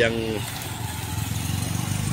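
Motorcycle passing close by, its engine running with a steady note.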